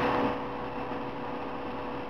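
Steady background hum and hiss with a faint constant tone, with no distinct handling noises.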